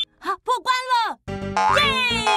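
Cartoon soundtrack: a few short, springy comic sound effects, then cheerful children's music comes in about halfway through, with a child's cheer of "Yay!" near the end.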